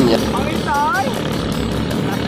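Small single-cylinder Sumo gasoline engines of flat racing boats running at full throttle across the water, a steady buzzing drone from several boats heard at a distance.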